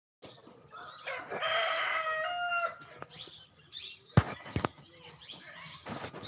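A rooster crowing once, a single call of about a second and a half. About two seconds later come two sharp knocks.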